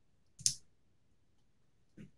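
A single computer keyboard keystroke: one short click about half a second in, with near silence around it.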